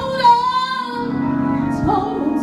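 A woman singing a gospel sermonic solo into a microphone. She holds a long wavering note through the first second, then goes on with the phrase over steady held accompaniment.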